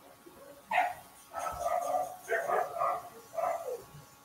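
A dog barking in a run of short barks, quieter than the voice around it.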